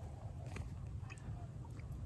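Faint eating sounds: quiet chewing with a few small clicks.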